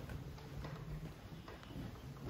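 A few footsteps on a hard floor, one roughly every half second to second, as a man walks to the lectern.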